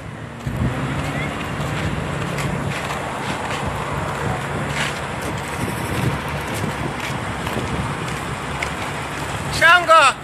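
Leyland truck's L10 diesel engine running with a steady low drone as the truck moves slowly off, with wind buffeting the microphone.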